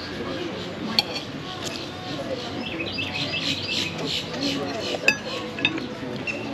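Fork and plate clinking, with two sharp clinks, one about a second in and one near the end, over background chatter and chirping birds.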